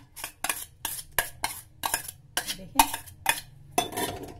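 A spoon clinking and scraping against a bowl in about a dozen quick, irregular knocks, as soaked semolina is scooped out into a mixer-grinder jar.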